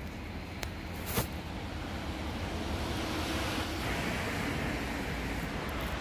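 Steady outdoor background noise at night: a low rumble with a hiss over it, the sound of distant traffic and wind on the microphone, with a click about a second in.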